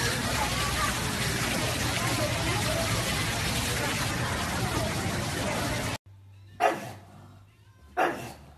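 Steady hiss of water jets spraying up through a metal floor grate of a ground-level fountain, cutting off suddenly after about six seconds. Then a pug barks, short and sharp, near the end.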